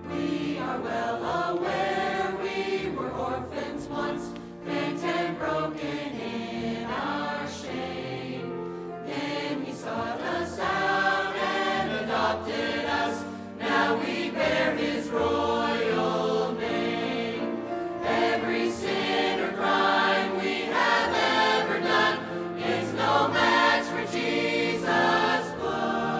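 Mixed church choir of men's and women's voices singing together.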